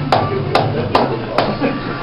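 A run of four sharp knocks, roughly two a second, over the steady hum of a busy room.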